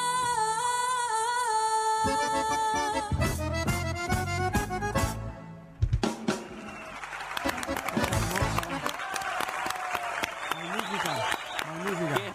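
Paraguayan galopa-style polka music with an accordion melody over bass drum and cymbals. It ends with a sharp final hit about six seconds in, followed by applause and voices.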